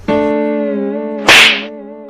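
Edited-in comedy sound effects: a held musical note that slowly fades, cut through about halfway by a short, loud whip-like swish.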